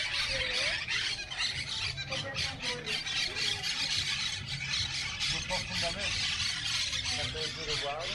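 A flock of monk parakeets squawking and chattering: a dense, continuous din of many overlapping shrill calls.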